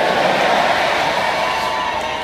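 A congregation's many voices sounding together, a loud steady crowd noise with no single voice standing out.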